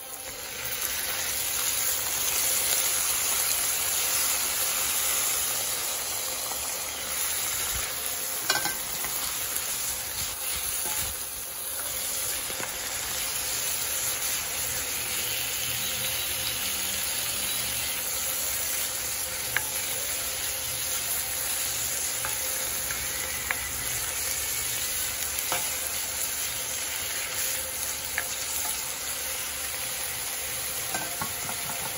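Spinach frying in a hot pan, a steady sizzle with a few light clicks; it grows louder about a second in.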